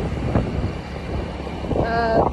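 Road and engine noise of a moving car, with wind buffeting the microphone and a brief voice near the end.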